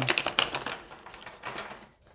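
Tarot cards shuffled by hand: a rapid run of crisp clicks that thins out after about half a second, with a few fainter ones later.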